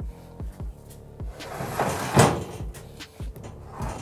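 Aluminium folding loading ramp being handled and folded at the back of a cargo van: a metal scrape and rattle that swells to its loudest about two seconds in, with a few dull knocks, over background music.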